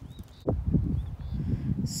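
Wind buffeting the phone's microphone outdoors: an irregular low rumble that starts with a click about half a second in and carries on loudly.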